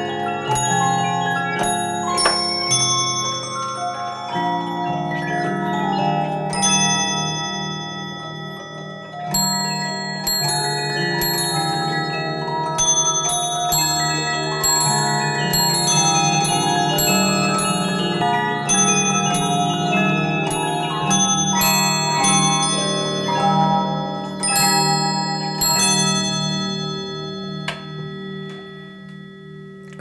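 Swiss cylinder music box with four combs in sublime-harmony arrangement playing a tune: the pinned brass cylinder plucks the steel comb teeth, and a separate comb strikes a row of bells that ring along with the melody.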